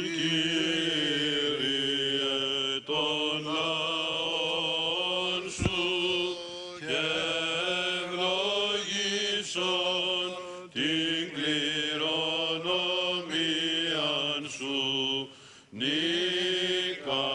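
Greek Orthodox Byzantine chant by male clergy: long, slowly ornamented phrases sung over a steady low held note (the ison drone), with a single click about five and a half seconds in.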